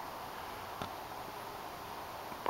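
Faint, steady background hiss with no distinct source, and one soft click a little under a second in.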